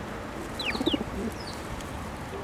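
Eurasian tree sparrows chirping: two or three short, quick chirps falling in pitch about half a second in. A brief low sound comes at the same moment.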